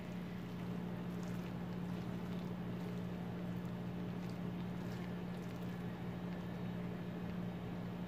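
A steady low hum, with a few faint soft clicks of a wooden spatula stirring and lifting cooked spaghetti in a frying pan.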